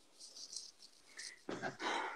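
Faint breathing from a person, a few soft hissy puffs, then a short, louder breathy burst about a second and a half in, like a stifled laugh through the nose.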